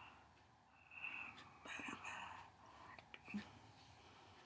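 A woman whispering faintly, a few short breathy sounds with no clear words, about one, two and three seconds in.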